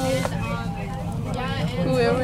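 City bus engine running with a steady low hum inside the passenger cabin, under indistinct voices.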